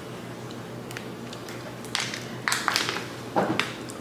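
A plastic water bottle being handled and drunk from: a few short clicks and crackles from about two seconds in, over a low steady room hum.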